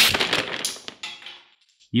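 A wooden Jenga tower collapsing: a loud crash as it falls, then the blocks clattering and knocking onto the table, dying away over about a second and a half.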